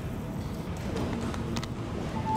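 Hall room noise: a steady low rumble with two brief faint knocks, one under a second in and one about a second and a half in.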